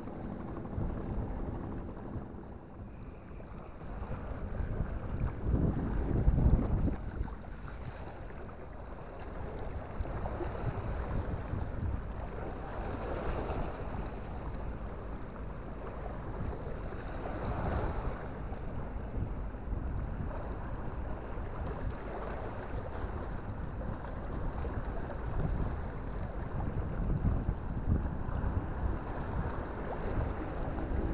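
Wind buffeting the microphone over water washing against rocks: a steady rush that swells louder a few times, most strongly about six seconds in.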